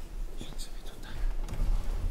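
Hushed whispering and low murmur of voices, with scattered small knocks and rustles.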